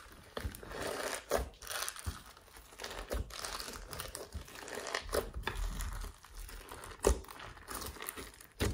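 Glossy slime mixed with soft clay being kneaded and squeezed by hand: a wet, crackly squishing with irregular clicks and a few louder pops.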